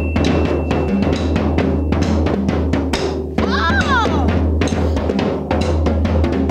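Drum kit played in a fast, busy pattern over a backing music track with a steady deep bass, all starting abruptly at the top.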